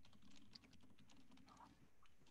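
Typing on a computer keyboard: a run of faint, quick keystrokes over a low hum.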